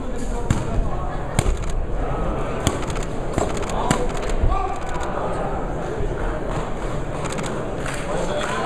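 Boxing-hall crowd voices and shouting, with a scatter of sharp knocks and thuds in the first half, about eight in all.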